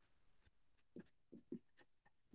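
Faint strokes of a felt-tip marker writing on paper, a few short scratches about a second in.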